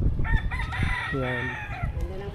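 A rooster crowing once, a single long call lasting about a second and a half.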